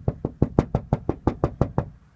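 Knuckles rapping on a front door in a fast, even run of knocks, about seven a second, stopping just before the end.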